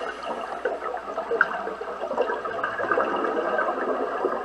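Underwater sound of scuba exhaust bubbles in a pool: a steady bubbling, gurgling wash full of small crackles.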